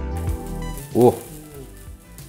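A crepe sizzling on the hot plate of an electric crepe maker just after being flipped, over soft background music. A short exclaimed "Uuu!" about a second in is the loudest sound.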